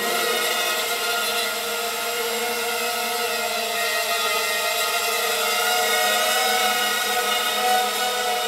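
Emax MT2204 2300KV brushless motors spinning Gemfan 5x3 three-blade props on a 250-size racing quadcopter in flight, a steady whine of stacked tones that wavers slightly with the throttle. The quad is carrying a heavier 2200 mAh 3S battery.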